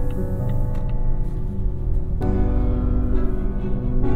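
Classical orchestral music played through a Volvo V90's Bowers & Wilkins car audio system, heard inside the cabin with the system's Concert Hall sound mode on. Held chords, with a new chord coming in about halfway through.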